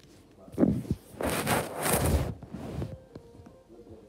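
Phone microphone being handled: a knock about half a second in, then loud rustling and scraping against the mic for about a second and a half, fading out, with a few faint clicks after.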